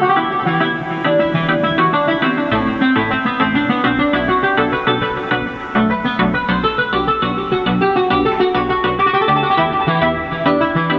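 Instrumental music from an audiophile sound-test track played through a Ground Zero midrange/midbass car-audio speaker under bench test, steady and loud with little treble.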